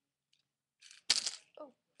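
A short, sudden clatter of small safety pins spilling out of a little container, about a second in.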